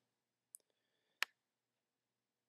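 Two short clicks from working a computer: a faint one about half a second in and a sharper one a moment later, with near silence around them.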